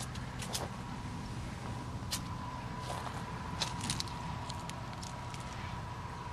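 Quiet outdoor background: a steady low rumble with a faint, even high whine and a few soft ticks.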